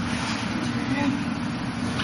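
Steady low background rumble with hiss, room or traffic noise, with a faint voice about a second in.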